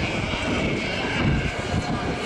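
Steady, low outdoor city rumble, like traffic heard across an open square.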